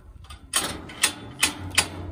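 The metal frame of a mobile milking trailer's hinged side cover clanking as it is lifted open by hand: four sharp knocks, about half a second apart.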